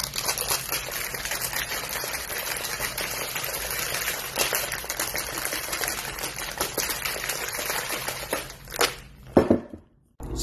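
Ice cubes rattling hard inside a two-piece tin-on-tin Boston cocktail shaker, shaken fast and steadily for about eight seconds. The shaking then dies away, with a couple of sharp knocks near the end.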